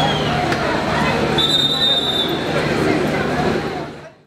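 Crowd chatter in a busy train station concourse, over a low steady hum. A brief high steady tone sounds about one and a half seconds in, and everything fades out near the end.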